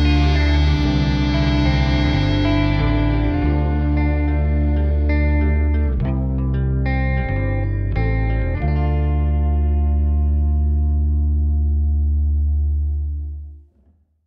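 Closing bars of a rock song: effects-laden electric guitar over a heavy bass, moving through a few sustained chords, then holding a last chord that fades out to silence near the end.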